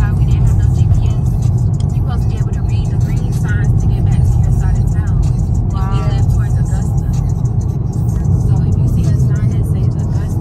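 Music with a heavy bass line and vocals, over steady road noise from a car driving on a highway.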